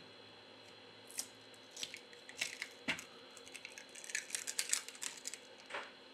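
Faint, scattered clicks and scrapes of a plastic pry tool levering a Huawei P40 Lite's battery up off its adhesive inside the phone frame. The clicks come thicker about four to five seconds in.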